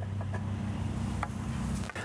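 A steady low hum, like a motor running, with a few faint scattered taps.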